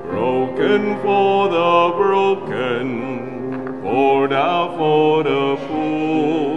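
A hymn sung by a solo cantor with piano accompaniment, the voice holding long wavering notes over sustained chords.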